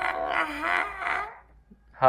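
A voice chanting Vietnamese spelling syllables of the letter h in a drawn-out sing-song, stopping about one and a half seconds in.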